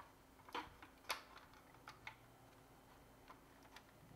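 A few faint, sharp clicks and taps of hard plastic toy parts being handled, the clearest about half a second and a second in, as a wing of a 1984 Hasbro G.I. Joe Cobra Rattler is set into its fuselage.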